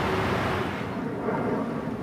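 Steady outdoor background noise on a golf course, a faint rushing haze with no distinct event, slowly fading.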